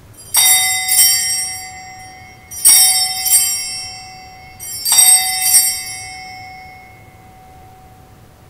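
Altar bells (Sanctus bells) rung three times, each a quick double shake whose bright, many-toned ringing fades over a couple of seconds. They mark the elevation of the consecrated host at the consecration.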